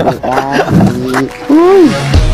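A voice-like or roar-like edited-in sound effect whose pitch swoops up and then down, the last swoop the loudest near the end, over background music.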